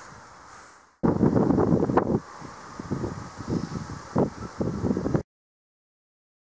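Wind buffeting the camera microphone in gusts: after a faint hiss fades out, loud rumbling starts abruptly about a second in, eases into uneven gusts, and cuts off suddenly about five seconds in, leaving silence.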